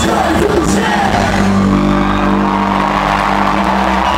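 Loud live band music with shouted vocals, settling into a long held chord a little under two seconds in.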